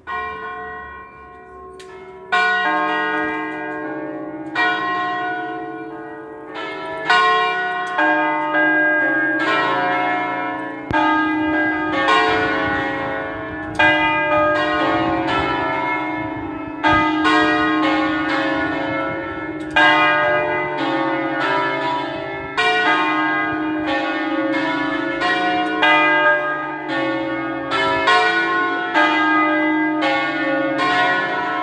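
Four church bells from a five-bell peal with its largest bell on B2, swung 'a distesa' (full swinging peal) to call a festive Mass. Their strikes overlap in an irregular, continuous peal with long ringing tails. The peal starts right at the opening and grows louder and denser over the first couple of seconds as the bells swing up.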